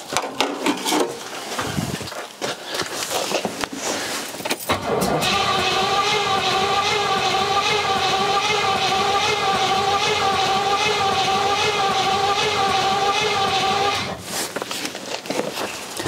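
Starter motor cranking the Rover P6's 4.6 V8 steadily for about nine seconds with the throttle held open. The engine coughs a tiny bit but does not catch, a non-start that the owner puts down to the fuel having run out. The cranking stops near the end, leaving the fuel pump to be heard.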